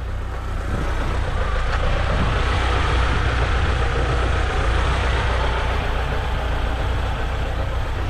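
A motor vehicle's engine running nearby with a steady low hum, joined by a broad rush of noise that swells over the first few seconds and eases toward the end.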